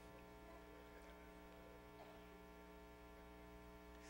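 Near silence: a faint, steady electrical mains hum.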